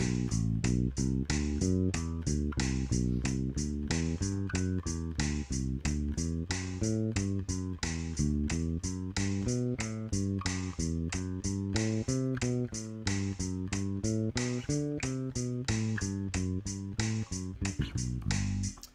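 Electric bass playing a steady run of eighth notes through a one-position scale exercise over G major chords, each note a step up or down from the last, against the even beat of a drum machine.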